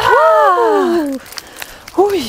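A woman's long triumphant cheer, held for about a second with its pitch rising and then falling away, followed by a few faint clicks.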